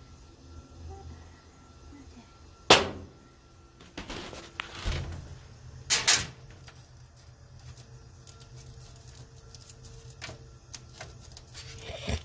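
Metal spoon scraping and tapping as batter is scooped into small foil cups on a metal baking sheet, with sharp knocks about three and six seconds in and lighter clicks between.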